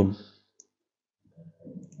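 A single faint computer mouse click about half a second in, following the tail end of a spoken word; a faint low murmur of the voice comes near the end.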